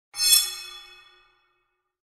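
A bright, bell-like chime sounding once, ringing with many tones and fading away within about a second.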